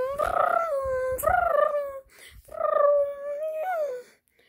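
A person's voice making long, high, wavering 'ooo' sounds, three held calls in a row, a vocal sound effect for a toy flying through the air.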